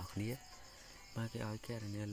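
A man speaking Khmer in two short phrases with a pause of about a second between, over a faint, steady, high-pitched background whine.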